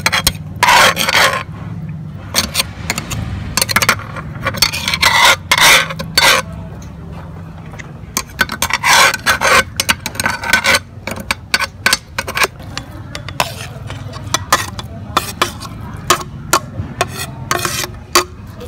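Cast-iron meat grinder working raw meat through its cutting plate: a run of irregular scraping bursts of uneven length over a steady low hum.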